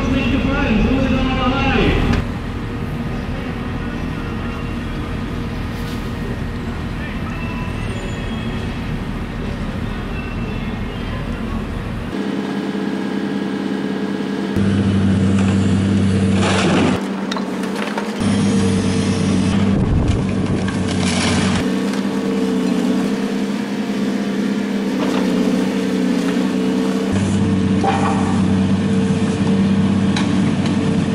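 Hydraulic demolition excavator working a sorting grab, its diesel engine running with a steady hum, with a few knocks of debris. The sound changes abruptly several times.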